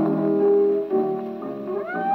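A 1929 hot jazz 78 rpm shellac record playing on a spring-wound Victor Orthophonic Credenza acoustic phonograph, thin with no high treble. The band holds chords, then near the end a horn slides up into a long note with vibrato.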